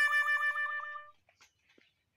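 A comic sound effect added in editing: a held, reedy tone that wobbles rapidly, about eight dips a second. It fades out about halfway through, leaving near quiet.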